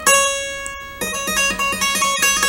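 Acoustic guitar playing a single-note solo: one picked note rings and fades for about a second, then a quick run of alternating notes follows.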